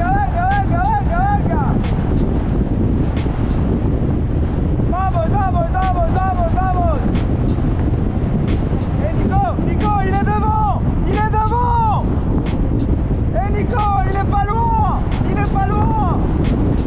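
Steady rush of wind on the microphone and road noise from a car following a cyclist. Over it, a man's voice shouts encouragement in four bouts of quick repeated calls.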